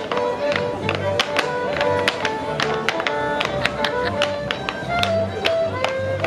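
A live fiddle tune over a low accompaniment, with the quick, rhythmic clatter of clogs tapping out dance steps on a wooden floor.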